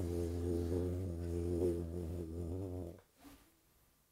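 A man's voice making one long, low, droning hum that wavers slightly in pitch, a vocal imitation of the weight pressing down through the columns. It stops about three seconds in.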